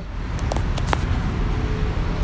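Steady low rumble of vehicle traffic, with a few light clicks about half a second to a second in.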